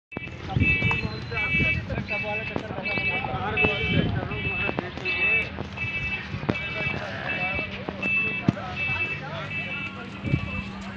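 An electronic beeper sounding a repeating pitched beep, about one and a half beeps a second, with people talking in the background.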